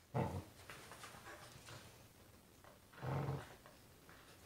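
Australian Kelpie making two short low growls, one just after the start and another about three seconds later, with softer shuffling sounds between as she wriggles on a leather couch.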